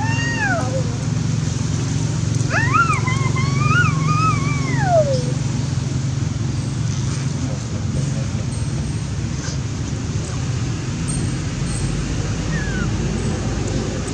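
Macaque calls: a high, cat-like whining call that ends just under a second in, then a longer one about two and a half seconds in that rises, wavers and falls away, over a steady low hum.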